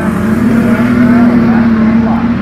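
A pack of street stock race cars running around a dirt oval. Their engines make a loud, steady drone that swells a little about halfway through as the field comes past.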